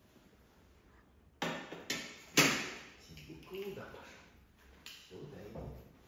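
Stainless steel dog bowl knocking on a tiled floor as it is set down: three sharp clanks about a second and a half in, the third loudest, followed by softer knocks.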